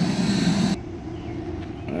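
Steady low hum of a Green Mountain Grills Davy Crockett pellet grill's fan running while it cooks. It cuts off suddenly less than a second in, leaving a quieter low background.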